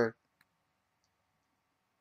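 Near silence in a pause between spoken sentences, with one faint, short click about half a second in.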